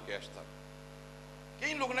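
Steady electrical mains hum from the microphone and sound system, heard in a pause in a man's speech. A word is spoken near the end.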